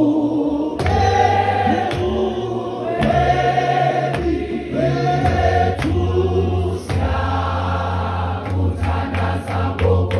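A large mixed choir singing a Xhosa hymn in several parts, holding long notes, with a few sharp clicks near the end.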